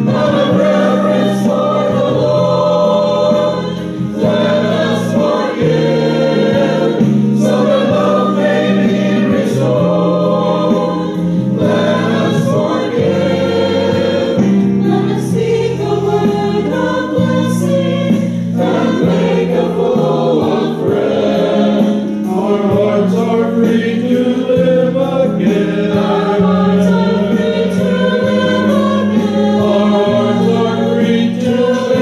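Mixed adult church choir singing a hymn in parts, continuously.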